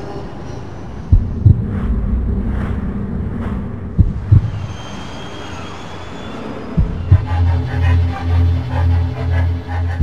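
Intro music with deep bass thumps in pairs every few seconds, then a low bass note pulsing about twice a second near the end.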